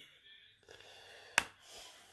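A faint rustle of ground black pepper sliding off a metal spoon onto a dry cure mix in a plastic tray, then a single sharp click of the spoon about one and a half seconds in.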